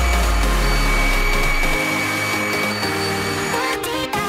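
Heat gun blowing hot air onto a slit PVC pipe to soften it, with a steady whine from its fan, under background music.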